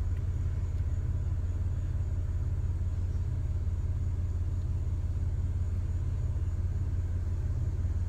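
Vehicle engine idling: a steady low rumble with a fine, even pulse.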